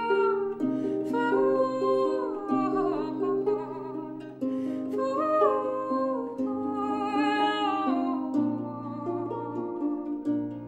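Lever harp played with plucked, ringing notes, under a woman humming a wordless melody that slides between pitches.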